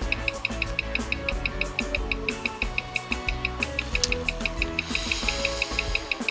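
Escapement of a replica Rolex ladies' watch with a Chinese ST6 automatic movement ticking evenly at 21,600 beats per hour, about six ticks a second, picked up by a timegrapher's microphone. The owner finds its readings poor whatever he tries with the crown. Soft background music plays underneath.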